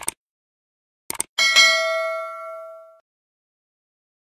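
Subscribe-button sound effects: a short click, a quick double click about a second in, then a bright bell ding that rings out and fades over about a second and a half.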